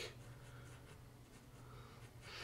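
Faint scratching of a sharp graphite pencil drawing fine lines on sketch paper.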